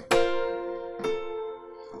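Keyboard playing an F sus4 chord (F, B-flat, C), struck once and left ringing as it fades, with a softer second attack about a second in.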